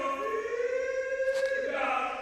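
A man's voice holding one long comic operatic sung note, sliding up a little in pitch at the start and then sustained, with a faint click about midway.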